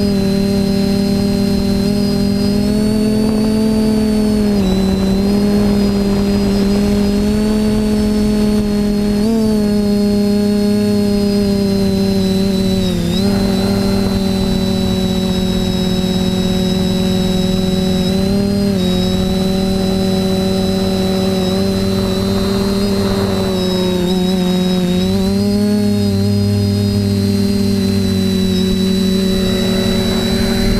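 Quadcopter's brushless motors and propellers heard from on board the aircraft: a steady multi-tone drone with a thin high whine above it. The pitch dips briefly several times as the throttle eases and picks up again.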